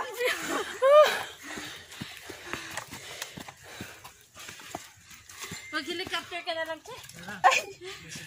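Hikers' voices: a couple of rising vocal exclamations in the first second, and more talk-like voice a little past the middle. Between them are short scattered ticks from footsteps on dry bamboo leaves and twigs.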